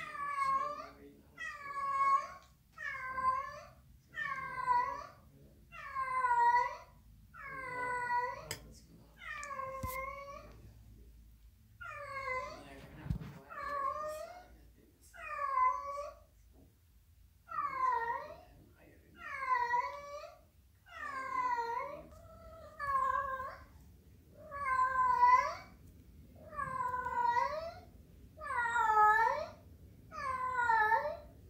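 Tabby cat meowing over and over, about one meow a second, each call alike, with a short pause near the middle.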